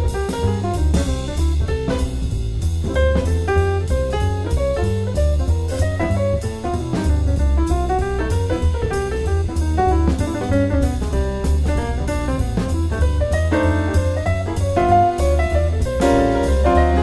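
Jazz piano trio of acoustic piano, upright bass and drum kit playing an up-tempo number. A walking bass line and steady cymbal strokes sit under a piano melody that climbs and falls in runs near the middle.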